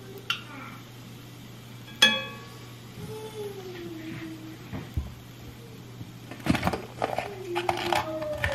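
Kitchen utensil sounds: a sharp, ringing clink of a utensil against a cooking pot about two seconds in, then a cluster of knocks and clatters of things set down on the counter near the end. A steady low hum runs underneath.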